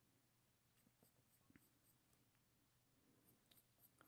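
Near silence, with a few faint scratches of a 2B graphite pencil drawing on paper.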